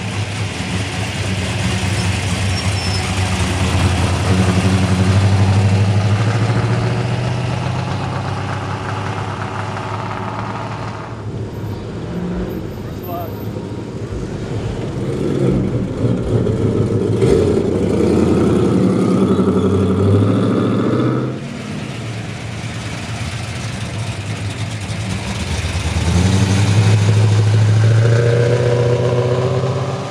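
Classic Plymouth and Dodge cars driving slowly past one after another, their engines running with a low rumble and light revving. Each car grows louder as it passes and then fades, three passes in all.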